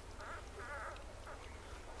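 Newborn puppies nursing, giving a few faint, short, high squeaks in the first second or so.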